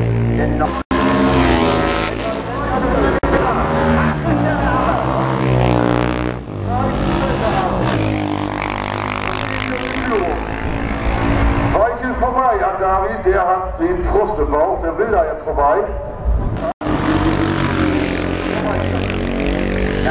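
Classic racing motorcycle engines running hard, their pitch sweeping up and down as they rev and pass. A speaking voice mixes in through the middle stretch.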